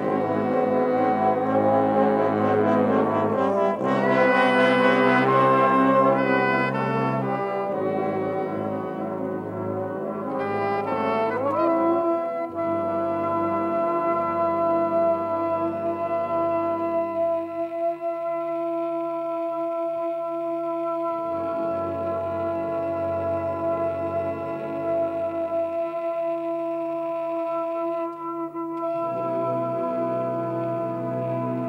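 Brass ensemble of trumpets, trombones, horns and tubas playing a dense chord passage, settling after about twelve seconds into long held chords, with low notes dropping in and out beneath them.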